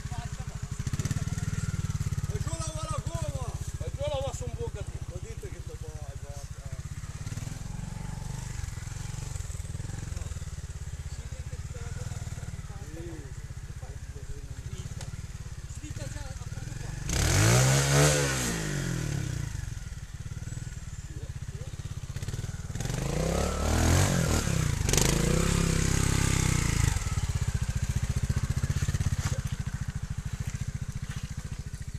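Trials motorcycle engines running at low revs, with two hard throttle openings: a sharp rise and fall in pitch just past the middle, then a longer, louder rev a few seconds later.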